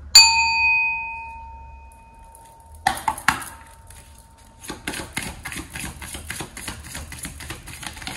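A small bell is struck once and rings out, fading over about three seconds. Two sharp knocks follow, then a deck of oracle cards is shuffled by hand, a rapid run of soft, even clicks through the last few seconds.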